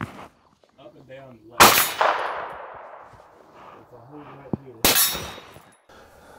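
Two gunshots from a pistol-caliber gun about three seconds apart, each a sharp crack, the first trailing off in a long echo.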